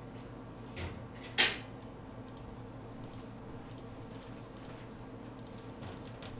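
Light clicking of a computer mouse and keyboard: a scatter of faint short ticks over a steady low hum, with one louder short noise about one and a half seconds in.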